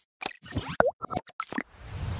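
Cartoon-style bubble sound effects from an animated channel logo: a quick run of short plops and pops with brief sliding bloops, settling into a softer swell near the end.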